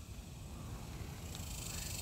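Quiet outdoor background: a low, uneven rumble of wind on the phone's microphone, with a faint steady high hiss.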